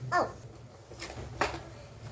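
A child's short "oh", then the handling of a cardboard toy box and a plastic toy bulldozer inside it: two sharp clicks or rustles about a second and a second and a half in.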